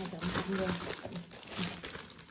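Thin plastic bags crinkling and rustling as whole durians inside them are lifted and handled, with a voice underneath.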